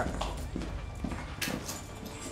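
A few scattered light knocks and clacks over faint low background noise: footsteps and goods being handled as clothes are taken down and packed.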